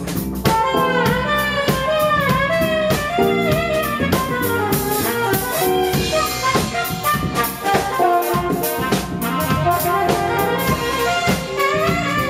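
A small jazz band playing live: a saxophone plays a gliding melody over a steady drum-kit beat, with bass guitar, electric guitar and keyboard underneath.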